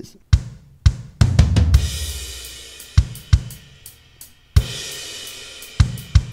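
GarageBand's SoCal software drum kit playing a soloed MIDI drum beat, with kick drum strokes and two cymbal crashes that ring and fade, about a second in and again past the halfway point.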